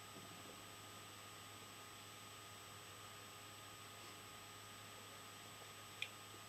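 Near silence: steady low hiss and hum of room tone, with one faint click at the very end.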